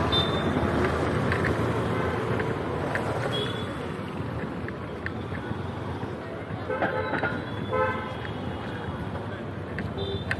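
Steady city street traffic noise from passing cars and motorbikes, with two short vehicle horn toots about seven and eight seconds in.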